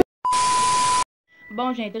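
A click, then a short steady electronic beep over hiss lasting under a second, which starts and stops abruptly, followed near the end by a woman beginning to speak.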